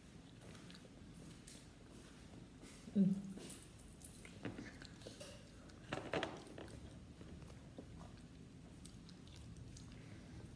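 Faint chewing of a mouthful of dried oregano leaves, with small mouth clicks. Two short vocal noises stand out, about three seconds in and again about six seconds in.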